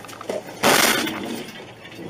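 A loose wheel striking the front of a moving car: a softer knock, then one sudden loud crash a little over half a second in that dies away over about half a second, heard from inside the car.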